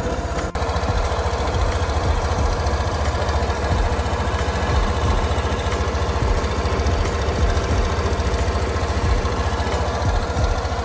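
Suzuki Burgman 125's single-cylinder four-stroke engine idling steadily, with a brief break about half a second in.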